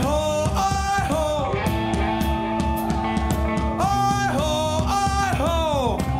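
Live rock band with electric guitars playing under a sung 'oh-oh' sing-along chant. The vocal lines slide in pitch, with a long falling slide near the end.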